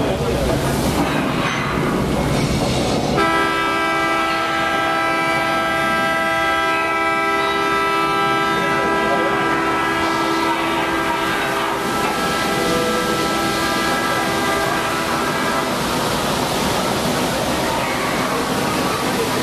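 A broad rumbling noise, then from about three seconds in a long, steady horn sounding several notes at once holds for some twelve seconds. From about ten seconds in, the rushing, crashing water of a staged flash flood pouring down the rocks swells under it.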